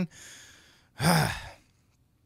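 A man sighs: a breathy in-breath, then a short voiced out-breath about a second in.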